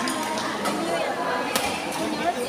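Badminton racket striking a shuttlecock with a single sharp smack about one and a half seconds in, over a background of people talking.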